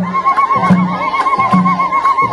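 High, rapidly warbling ululation held as one long trill, over a steady drum beat with hand claps.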